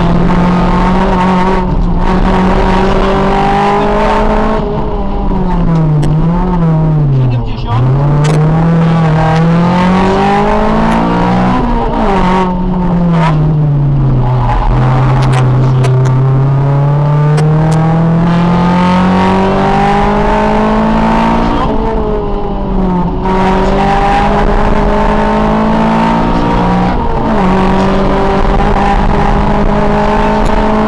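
Honda Civic rally car's four-cylinder engine, heard from inside the cabin, driven hard through the gears: the pitch climbs in long sweeps and falls back sharply at each shift or lift-off, with the deepest drops about a quarter of the way in and near halfway.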